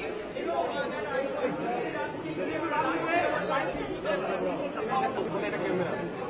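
Indistinct chatter of a small crowd: several people talking over one another, with no single voice standing out.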